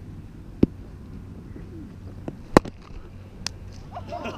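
A loud, sharp crack of a cricket bat striking the ball about two and a half seconds in, with a fainter click about half a second in and another near the end.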